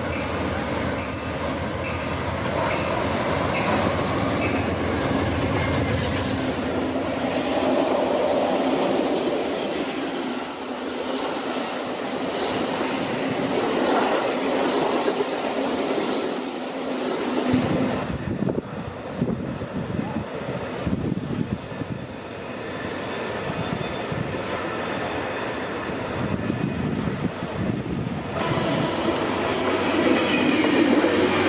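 Passenger trains rolling past close by on a curve: first an Amtrak train hauled by a GE Genesis diesel locomotive, with wheel squeal and clickety-clack from the cars. After an abrupt change about 18 seconds in, a Sounder commuter train's bilevel cars are running past by the end.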